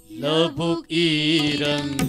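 A voice singing a Manipuri children's song: long held notes, with a short break just before a second in.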